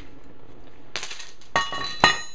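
Steel spring bar of a weight-distributing hitch being pulled out of its socket in the hitch head: a short scrape about a second in, then a ringing metallic clink near the end.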